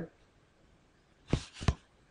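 Two short, sharp clicks about a third of a second apart, coming after about a second of near silence.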